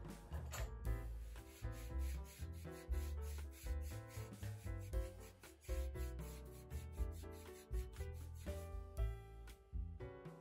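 Hand sanding of wood: sandpaper rubbed in repeated strokes along the edge of a water-damaged wooden door, smoothing the raised fibres, under background music.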